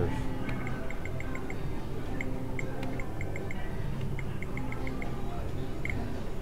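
Video poker machine sounding runs of short, high electronic beeps, about five or six a second in several quick groups, as the game plays out a hand. A steady low casino background din runs underneath.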